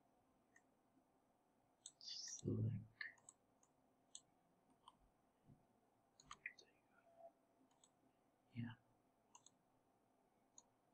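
Faint computer mouse clicks, about ten scattered single clicks.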